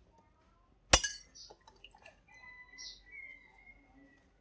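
A single sharp clink of a metal spoon striking a dish about a second in, ringing briefly, followed by faint small taps and clicks of utensils.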